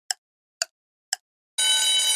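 Quiz countdown timer sound effect: three short ticks about two a second, then, about one and a half seconds in, a steady bell-like alarm starts ringing as the countdown reaches zero, signalling time up.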